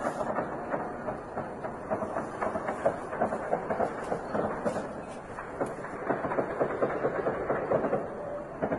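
Distant automatic gunfire: a long, rapid run of cracks and clatter through the whole stretch, swelling and easing in loudness.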